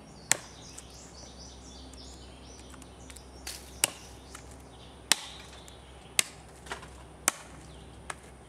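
A handmade fixed-blade knife chopping into a painted wooden board: five sharp chops, one near the start, then after a pause four more about a second apart.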